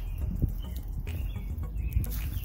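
Faint short bird chirps over a low rumble on a handheld phone's microphone, with two soft bumps, one about half a second in and one near the end.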